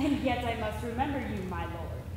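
Speech only: a woman speaking lines of stage dialogue.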